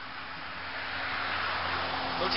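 Outdoor background noise from the camera microphone: a steady hiss that slowly grows louder, with a faint low hum underneath.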